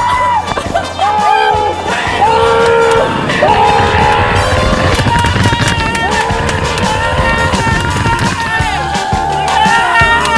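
Background music: a melody in long held notes that change about once a second, over a steady bass.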